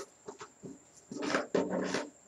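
A few faint clicks in the first second, then a short wordless vocal sound from a person, in two parts, over the second half.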